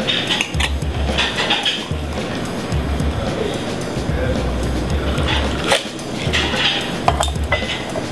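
Background music with a steady low beat, over a few sharp clinks of a metal cocktail shaker against glass as a drink is strained into a champagne flute; the loudest clink comes about two thirds of the way in, another a second later.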